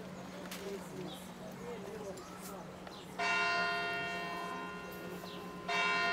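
Church bell struck twice, about two and a half seconds apart, the first stroke coming about three seconds in. Each stroke rings on and slowly fades.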